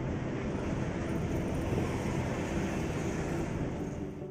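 Steady engine and road noise of a truck driving along a highway.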